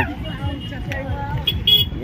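Traffic-jam street noise: a low vehicle rumble and people's voices, with a short, high-pitched car horn toot near the end.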